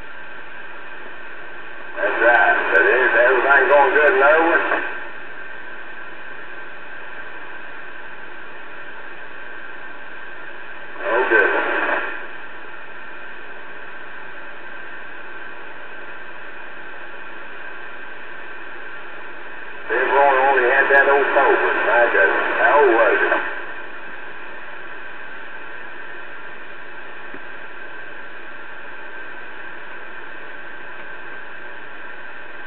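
CB radio receiver hiss with the squelch open. Voice transmissions break through it three times: about two to five seconds in, briefly around eleven seconds, and again from about twenty to twenty-three seconds.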